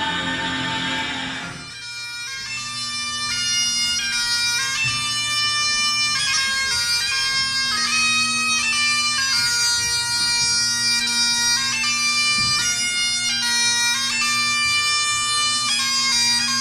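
A small group of voices singing ends within the first two seconds. A Great Highland bagpipe then plays a tune, the chanter's melody stepping between held notes over its steady drones.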